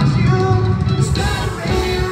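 Live post-hardcore band playing, with the singer singing over electric guitars, bass and drums.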